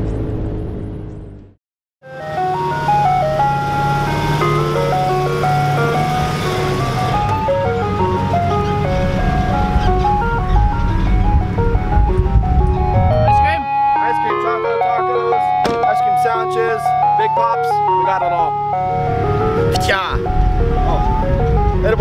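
A loud music track fades out, and after a brief silence an ice cream truck jingle starts: a simple electronic chime tune played one note at a time and repeating, with a steady low hum beneath it that drops out for several seconds in the middle.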